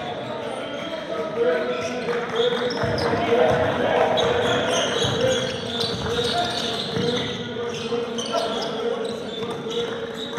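A basketball bouncing on a gym floor during play, with indistinct voices of players and spectators echoing in the hall and a steady hum underneath.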